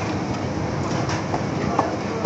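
Steady noisy sizzle and rumble from a street-stall frying station: a large karahi of hot oil for frying puris, over its burner. A brief high chirp comes near the end.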